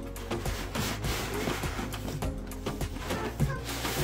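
Background music, with wrapping paper and a cardboard box rustling and crinkling as a present is unwrapped.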